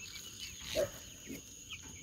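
Young poultry in a brooder: one short low call about a second in, a few faint high peeps near the end, and a steady high-pitched tone underneath.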